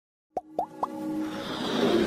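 Intro sound effects: three quick rising plops about a quarter of a second apart, then a swelling whoosh with held tones building underneath.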